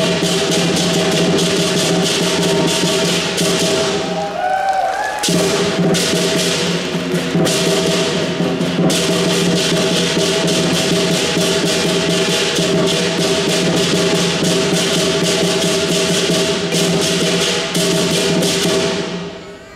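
Lion dance percussion band playing: a large drum beaten in rapid strokes with cymbals crashing and a steady ringing underneath. The playing dips briefly about four to five seconds in, then carries on.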